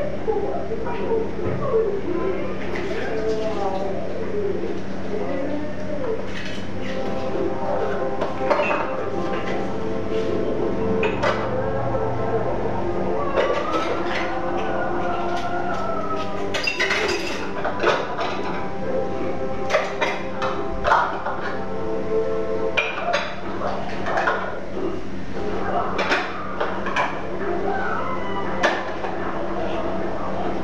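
Dishes, pots and utensils clinking and knocking as they are handled at a kitchen sink, in short separate strokes. Indistinct voices talk throughout over a steady low hum.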